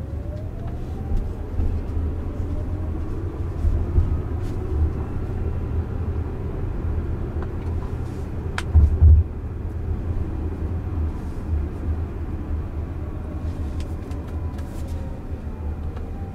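Inside the cabin of a Jaguar I-Pace electric car driving on a city street: steady low road and tyre rumble under the electric drive motor's thin whine, which rises in pitch as the car speeds up at the start and falls again near the end. About nine seconds in there is a short loud thump with a sharp click.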